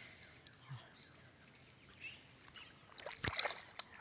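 Faint riverbank ambience with a steady, high-pitched insect drone. A few short knocks and rustles come near the end.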